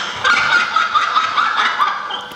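A woman's high-pitched giggling, in quick repeated pulses.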